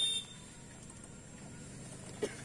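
A short high-pitched electronic beep right at the start, then only a faint steady background hiss.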